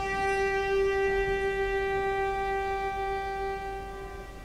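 Solo cello playing one long bowed note, held steady and fading away near the end as the piece closes.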